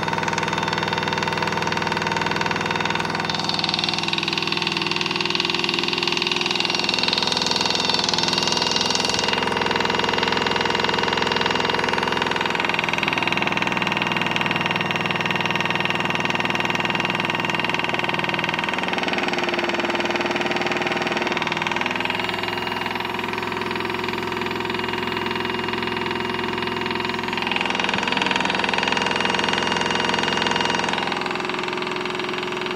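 Small electric motor of a modified Miele W1 toy washing machine running steadily as it turns the water-filled drum, a whir of several steady tones that shifts in pitch every few seconds.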